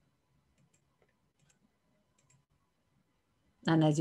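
Faint, scattered computer mouse clicks, about half a dozen sharp ticks spread over the first two and a half seconds of near silence, as arrows are drawn onto an on-screen slide. A woman's voice starts near the end.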